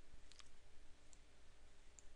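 Faint clicks of a computer mouse button: a quick double click about a third of a second in, then a lighter click a little after a second, over quiet room hiss.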